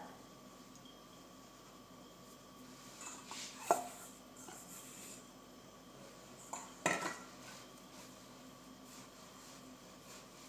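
Metal spoon clinking and scraping against a stainless steel mixing bowl as soft dough is scraped out: two sharp, ringing clinks about three seconds apart, the first a little louder, with fainter scrapes around them.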